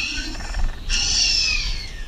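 Dinosaur roar sound effect: two harsh, screeching calls, each about a second long, the second falling slightly in pitch.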